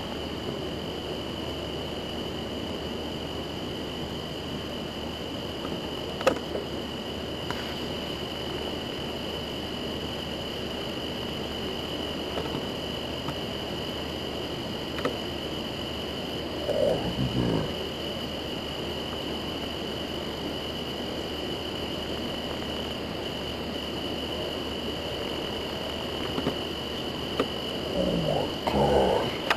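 Crickets chirring steadily, a continuous high-pitched trill over a low hiss. A brief lower sound comes a little past halfway through.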